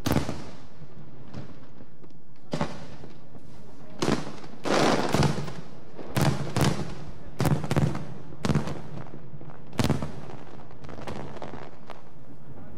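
Aerial firework shells bursting: about ten sharp bangs spread unevenly, some in quick pairs and a close cluster near the middle.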